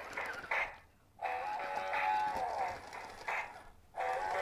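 Animated plush football-player mascot toy playing a recorded sound clip through its small built-in speaker. It starts suddenly with a short burst, breaks off briefly about a second in, then goes on in a longer wavering passage.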